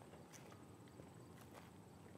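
Near silence with a few faint footsteps, about a second apart, as a person walks.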